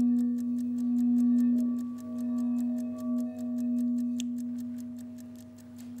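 Large frosted quartz crystal singing bowl ringing after being played with its ball-tipped mallet: one low, pure tone that swells and dips in slow pulses, then fades away over the last couple of seconds.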